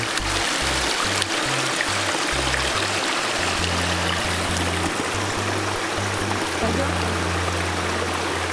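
A shallow stream running over stones, a steady rush of water, mixed with background music that carries a low bass line of held, changing notes.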